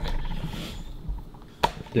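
Low rumble of handling noise on a handheld camera's microphone as the camera is swung around, with a single sharp click near the end.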